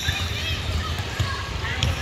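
Indistinct chatter of spectators and players echoing in a gym, over a steady low rumble, with one short sharp sound near the end.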